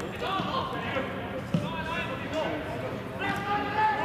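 Footballers' shouts and calls across a training pitch, with the thuds of a football being kicked and passed. One sharp kick stands out about one and a half seconds in, and a long held call comes near the end.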